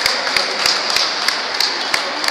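A group of people applauding: a steady wash of clapping with sharp individual claps standing out about three times a second.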